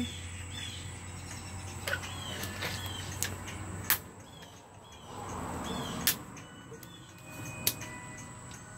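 Small birds chirping in short, repeated high calls that dip in pitch, with scattered sharp clicks and a brief rise of soft noise about five seconds in.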